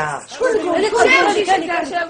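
Several people talking over one another in excited chatter.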